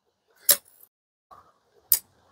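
Two sharp clicks from a hand caulking gun as its trigger is squeezed while it pushes out a bead of glue, about a second and a half apart.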